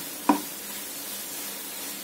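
Grated coconut and jaggery mixture cooking in a non-stick frying pan: a steady sizzle, with the scrape of a wooden spatula stirring it.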